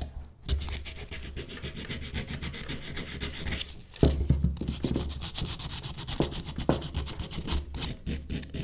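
Hand sanding: sandpaper rubbing back and forth over carved Ficus benjamina wood in quick short strokes, with a brief pause just before the middle.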